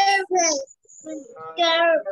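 A child's voice reading words aloud from a list in a drawn-out, sing-song way, in two stretches with a short pause between them.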